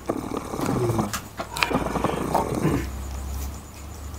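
A man's low, rough growling and grunting, in a trance as a medium in a spirit-possession ritual. It goes irregularly for about three seconds, with a couple of sharp clicks, then dies down.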